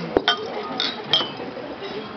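Drinking glasses clinking together in a toast: several bright, ringing chinks in the first second and a half, then fading.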